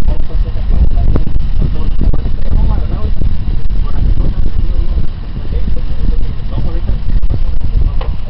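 Heavy wind buffeting the microphone, with indistinct voices talking underneath.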